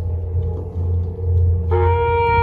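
Marching band field-show music: a pulsing low rumble under a faint held note, then near the end the band's winds come in on a loud sustained note.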